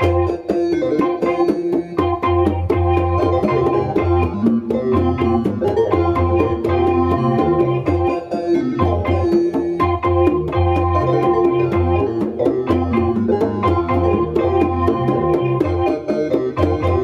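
Live jam of hand-played congas keeping a quick, steady pattern over sustained, organ-like synthesizer chords and a low bass line.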